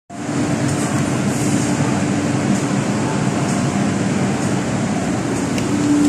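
Steady hum of an East Rail line electric train standing at the platform with its doors open, its air-conditioning and equipment running, with a steady low tone in the hum.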